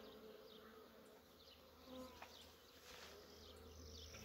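Faint, steady buzzing of honeybees flying around an opened hive.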